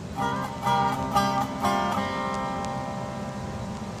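Guitar playing a quick phrase of plucked notes with bends in the first two seconds, then a chord ringing out and slowly fading over a low, steady drone.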